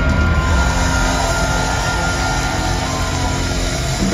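Live rock band, with guitars, keyboards and drums, holding a loud sustained chord at the climax of a song.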